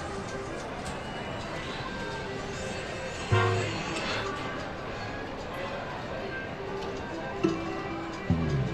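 Casino floor din: electronic jingles and chimes from many slot machines over background chatter, with a brief louder burst about three seconds in.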